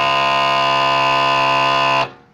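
Electric-hydraulic cab-tilt pump of a Mitsubishi Fuso Super Great truck running with a loud, steady whine while the cab is lowered. It cuts out by itself right at the end, the sign that the cab is fully down.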